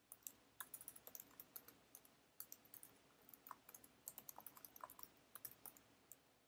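Quick, irregular keystrokes on a computer keyboard as a line of code is typed. The clicks are faint.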